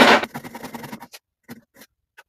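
Scrap timber blocks slid and set against a workpiece on a wooden workbench: a short rough scrape at the start, wood rubbing on wood, then a few light clicks and knocks.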